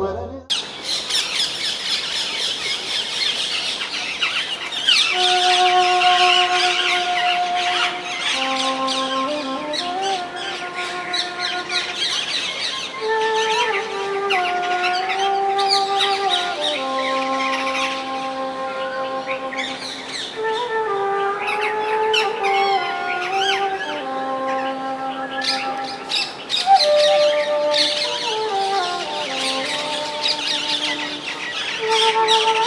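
Bansuri (bamboo flute) playing a slow melody of long held notes with gliding slides between them, starting about five seconds in, over many birds chirping.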